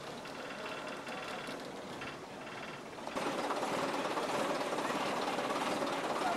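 Recovery truck's diesel engine running with a rhythmic mechanical clatter. It gets louder and fuller about three seconds in.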